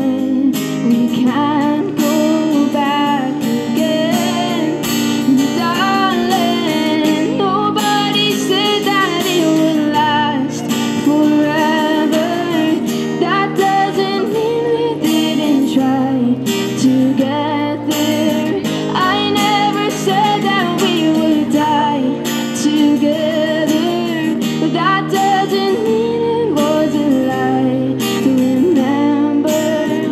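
A woman singing a slow ballad while strumming an acoustic guitar in a steady rhythm.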